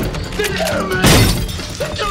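Glass shattering under gunfire, with one loud crash about a second in, over film score music.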